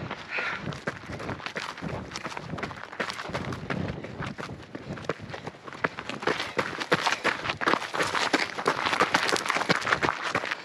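Running footsteps on a narrow dirt and rock mountain trail: quick, uneven footfalls that get a little louder in the second half.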